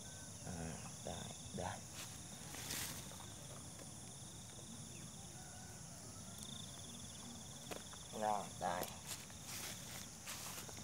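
A steady, high-pitched chorus of insects in the grass, with a pulsing trill that drops out early and comes back about six and a half seconds in. A few soft clicks come from hands working at the trap.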